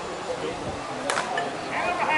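A softball bat striking a pitched slowpitch softball, one sharp crack about a second in.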